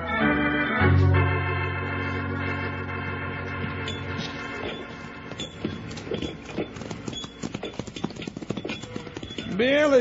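An organ musical bridge plays held chords for about four seconds and fades out. It gives way to a sound effect of horses' hoofbeats, irregular clip-clop strikes that run until the next line of dialogue.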